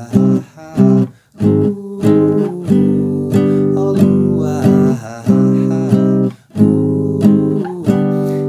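Classical guitar strummed in downstrokes through a C minor, A-flat major, G major progression: two strokes each on C minor and A-flat and four on G. The pattern runs round about twice, with a brief muted gap between passes.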